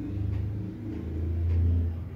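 A steady low rumble that swells toward the end.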